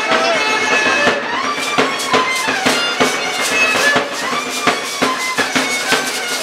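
Live music for a Mexican danza de pluma: a high, reedy melody line with held notes and pitch glides over a steady drum beat.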